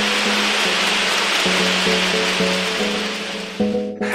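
Audience applause, an even hiss of many hands clapping, over soft sustained background music. The applause cuts off abruptly near the end, leaving the music.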